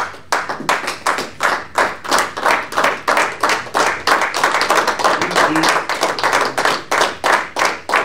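A small group of people clapping together in a steady rhythm, about three claps a second.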